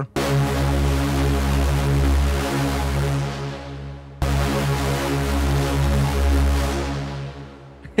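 Arturia MiniFreak V software synth playing a distorted, detuned supersaw lead patch with heavy low end: two held notes of about four seconds each, the second fading out near the end. It runs through a compressor and a Valhalla VintageVerb dirty-plate reverb.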